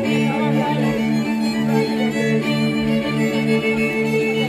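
Slovak folk string band from Terchová playing a lively tune: fiddles carry the melody over a bowed bass that keeps a steady pulse of strokes, a little under three a second.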